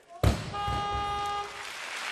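Loaded barbell with rubber bumper plates dropped onto the wooden lifting platform after a missed snatch: one heavy thud a quarter second in. It is followed by a steady buzzer-like tone lasting about a second, over continuous arena crowd noise.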